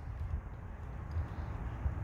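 Quiet outdoor background in a pause between speech: only a low, steady rumble.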